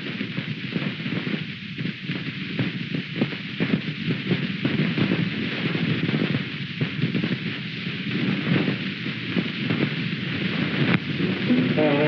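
Steady hiss and fine crackle of a worn early-1930s optical film soundtrack, with no clear speech or music.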